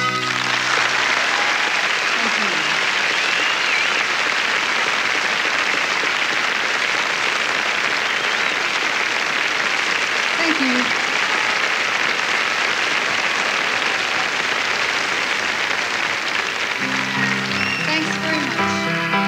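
Concert audience applauding steadily for a long stretch right after a song ends. A few pitched instrument notes start up near the end.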